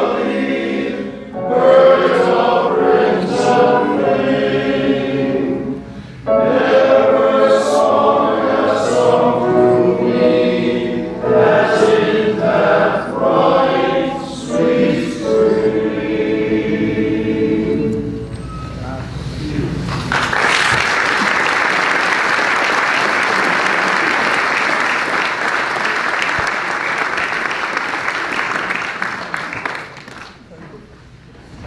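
A choir of men's voices singing a hymn in phrases, the song ending about two-thirds of the way through. The congregation then applauds for about ten seconds.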